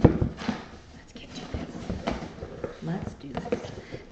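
A cardboard shipping box being handled and worked open: irregular knocks, scrapes and rustling of the cardboard, with a brief murmur of voice near the end.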